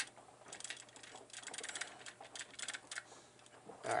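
Hands handling small plastic parts at a drill press: three quick clusters of light clicks and rattles.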